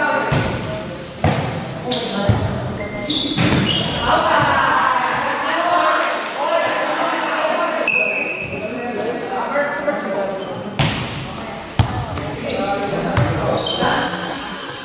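A volleyball being struck by players' hands during a rally: a string of sharp, brief hits ringing in a large gym hall, with players' shouts and calls between them.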